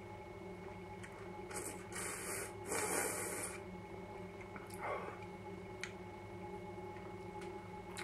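A man drawing ale through his teeth with a mouthful held, aerating it to bring out the flavour: three hissing slurps in quick succession about two seconds in, the last the longest, then a fainter one near the five-second mark.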